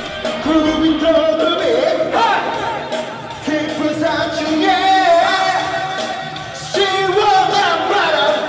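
Karaoke: a man singing into a handheld microphone over a music backing track, holding long notes and sliding between pitches.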